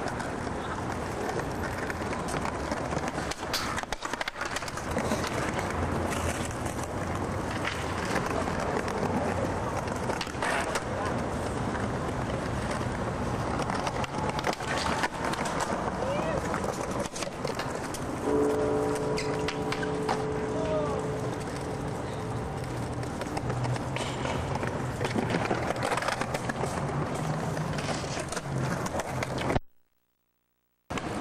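Skateboard wheels rolling on stone pavement with sharp clacks of the board popping and landing, over steady city noise and indistinct voices. A steady pitched whine sounds for about three seconds past the middle, and the sound cuts out abruptly at the very end.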